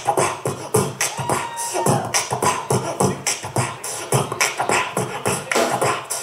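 Live soul band playing a song: a steady drum beat with bass and electric guitar, amplified through the club's PA.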